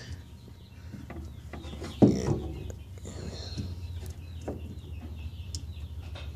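Faint chicken clucks and short bird chirps over a steady low hum, with one sharp knock about two seconds in.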